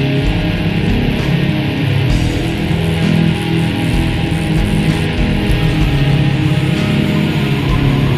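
Black metal music: a dense, steady wall of guitar with no pauses or sharp hits.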